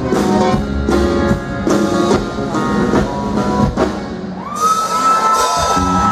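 Live Tejano band playing a song at full volume, with a steady beat. About four and a half seconds in, a long, high held note comes in over the band.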